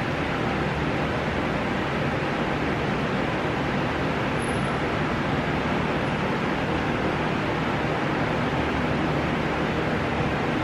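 Steady room noise: an even hiss with a faint low hum and no changes.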